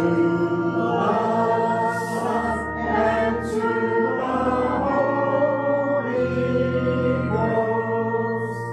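Church congregation singing a hymn together in sustained notes, the pitch moving every second or so.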